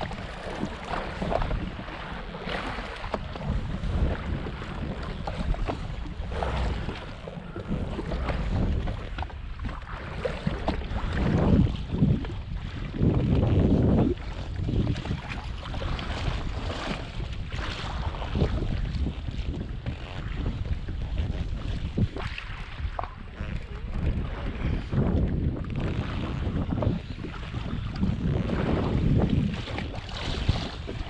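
Wind buffeting the microphone over sea water slapping against a jet ski's hull, an uneven rushing that swells louder a few times.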